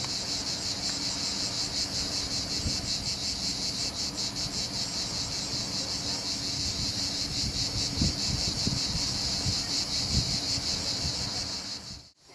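Steady, high-pitched chirring of a chorus of insects, with a fine even pulsing, over a few faint low rumbles.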